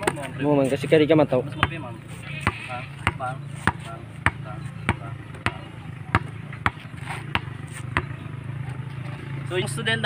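A basketball dribbled on a concrete road, bouncing in a steady rhythm of about three bounces every two seconds.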